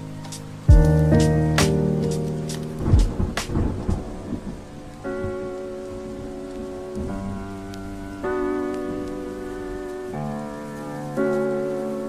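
Steady rain with a rumble of thunder a few seconds in, mixed with lofi hip hop. A beat runs out at the start, and soft sustained keyboard chords come in about five seconds in.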